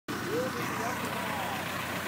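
Steady outdoor background noise with faint, indistinct voices of people at a distance.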